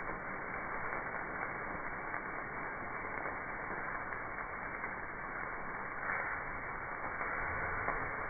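Meat sizzling on a charcoal grill: a steady, muffled hiss with a couple of faint ticks.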